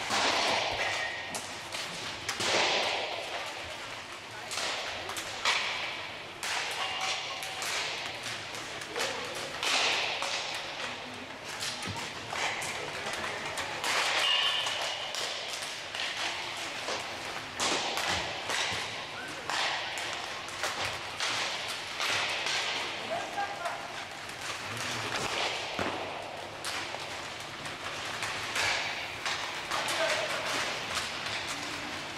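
Inline hockey warm-up: repeated sharp cracks of sticks hitting the puck and of pucks striking the boards and goal, scattered irregularly throughout, with players' voices in between.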